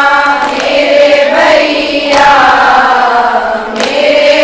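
A woman reciting a noha, an Urdu mourning elegy, sung in long held notes that glide gently, with short breaks between phrases.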